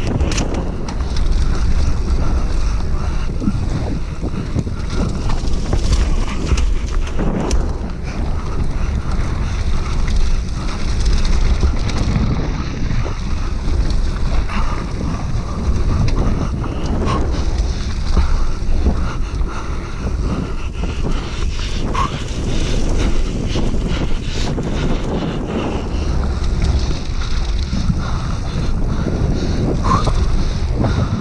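Wind rushing over the microphone of a camera riding along on a fast downhill mountain-bike descent. Under it runs a steady low rumble with frequent knocks and clatter from the bike on rough ground.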